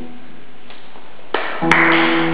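Nylon-string classical guitar: a chord rings and fades away through a short pause, then a loud, sharply attacked chord comes in near the end.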